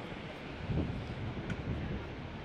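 Wind buffeting the microphone, a low rumble that swells and eases over a steady rushing hiss.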